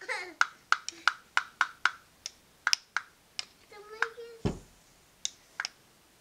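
Ratchet wrench clicking as it turns a wheel puller's screw to draw the shaft off a Jabsco raw water pump, about four clicks a second at first and then slower and more spaced out. A short burst of voice and a dull thump come a little past the middle.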